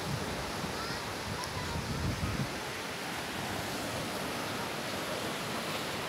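Small waves breaking and washing up on a sandy beach: a steady, even rush of surf.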